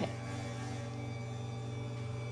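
Electric hospital bed motor running with a steady low hum as the bed is raised.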